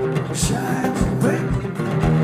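Live music: a man singing while strumming an acoustic guitar, over a low thumping beat.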